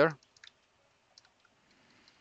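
A few faint, scattered keystrokes on a computer keyboard.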